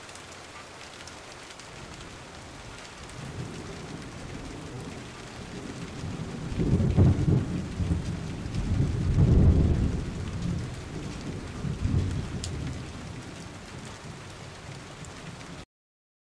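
Steady rain-like noise of splashing, trickling water, swelling with heavier low rumbles from about six to ten seconds in and again briefly around twelve seconds.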